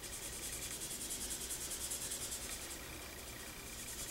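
Marker tip scribbling rapidly back and forth on a sheet of paper, colouring in an area: a quick, even scratching rhythm that is loudest in the first couple of seconds and eases near the end.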